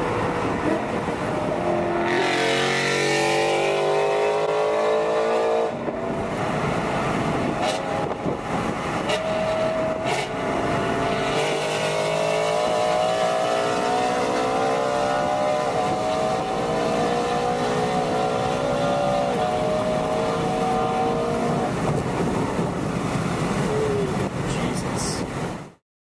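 Extremely loud, modified BMW E92 M3 with its naturally aspirated 4.0-litre V8 accelerating hard alongside. Its pitch climbs steeply, drops at a gear change, then rises again in long pulls through the gears.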